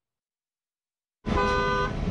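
Dead silence for about a second, then a school bus's horn sounds briefly, a chord of steady tones over the low rumble of the bus's engine.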